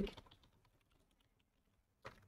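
Faint typing on a computer keyboard: scattered light key clicks.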